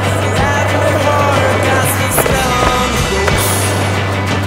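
Rock music playing over a skateboard on concrete: the trucks scraping along a concrete ledge, with two sharp knocks of the board about two and three and a quarter seconds in.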